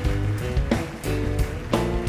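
Live band playing an instrumental passage: sustained pitched chords and bass under a steady beat of sharp percussive hits, about three a second.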